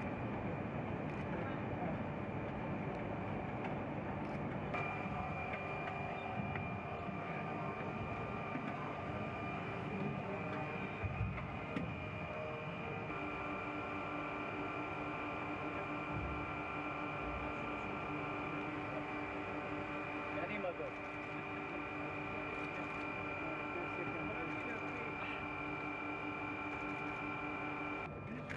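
Steady mechanical hum of fans or machinery, carrying several held tones, under faint indistinct voices. The set of tones changes at about five seconds and again at about thirteen seconds in.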